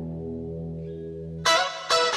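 Karaoke backing track in an instrumental stretch: electric guitar holding a note that rings on, then two sharp picked notes or chords near the end.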